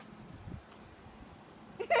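Mostly quiet background, then a short burst of laughter near the end.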